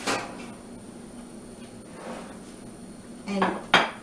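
A ceramic plate knocking against a stone countertop: one sharp clink right at the start and a louder one near the end.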